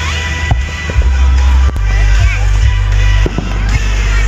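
Background music over a fireworks display, with a few sharp bangs of firework shells bursting through the music.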